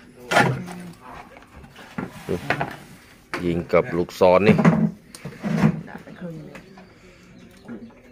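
Mostly a person speaking, with a few light clicks and knocks in the pauses.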